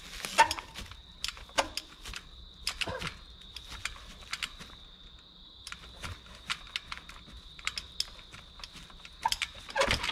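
Trials bike clattering as the rider hops and balances on a log and boulder: irregular sharp clicks and knocks from tyres, wheels and frame. A faint steady high tone sounds behind them.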